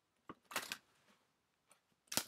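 A deck of oracle cards being handled: a sharp tap, then a brief flurry of card rustling about half a second in, and a faint click near the end.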